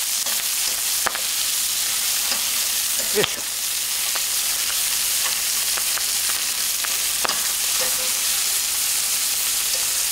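Bone-in chicken legs searing in olive oil over high heat in a cast-iron pot: a steady sizzling hiss as the skin browns, with a few light clicks of a carving fork against the pot as the pieces are turned.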